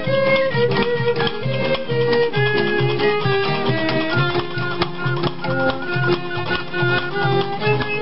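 Romani-style string band music: a fiddle melody over a steady strummed guitar beat.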